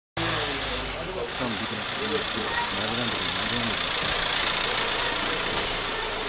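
People talking for the first few seconds over a steady engine running, as at a vehicle idling on the street.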